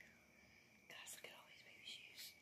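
Near silence, with a faint whisper about a second in and another near the end, over a thin, steady high tone.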